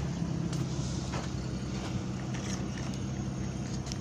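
A steady low mechanical hum, with a few faint knocks.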